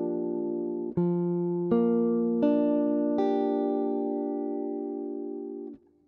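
Clean electric guitar comping jazz chords in Gm7: a chord rings on, then four more chord strikes come less than a second apart. The last is left to ring for about two and a half seconds before it is muted.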